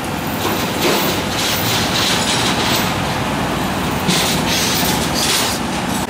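Flatbed tow truck, loaded with a van, driving past close by: steady engine and road noise, with louder, hissier stretches about a second in and again after four seconds.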